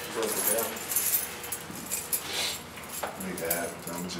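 Indistinct voices talking in short snatches, with light metallic jingling and clinks throughout.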